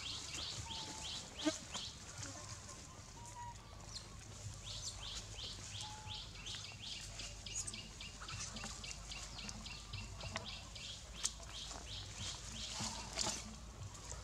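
A bird calling a rapid run of short, high, downward-sliding chirps, about four a second, which breaks off for a few seconds early on and then runs on. A few sharp knocks and leaf rustles from the monkeys moving in the dry leaf litter stand out, the loudest about a second and a half in and near the end.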